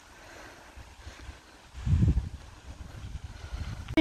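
Wind buffeting the microphone in uneven low gusts, the strongest about two seconds in, over a faint steady hiss.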